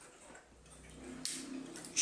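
Antique fusee bracket clock ticking faintly, its pendulum just set swinging to start the escapement. A short hiss comes a little after a second in.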